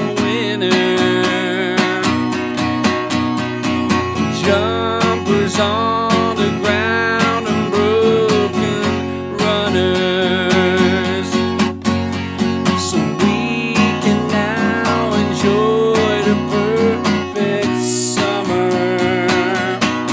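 Steel-string acoustic guitar strummed steadily, with a man singing a melody over it.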